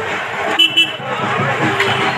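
Two short vehicle horn toots in quick succession about half a second in, over the steady noise of slow road traffic.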